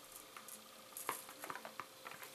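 Faint handling noise of a small cardboard box held and turned in the hands: a few light clicks and rustles.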